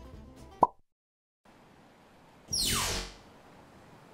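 Edited transition sound effects: a short pop with a quick rising pitch about half a second in, a moment of dead silence, then a loud whoosh that sweeps downward in pitch about two and a half seconds in, with a faint steady hiss after it.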